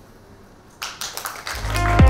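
Audience applause breaking out about a second in, with electronic music fading in over it and growing louder near the end.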